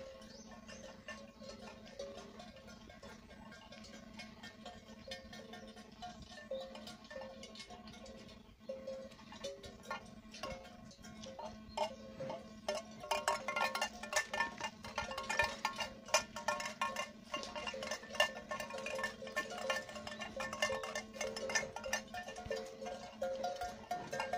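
Cowbells on walking cattle clanking irregularly, growing louder and busier about halfway through as the cows come close, over a steady low hum.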